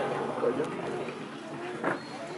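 Voices in the background, with a short sharp knock near the end.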